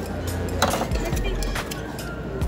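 Metal serving tongs clinking a couple of times against a stainless steel buffet pan while picking up fried chicken, over background music and a steady hum of chatter.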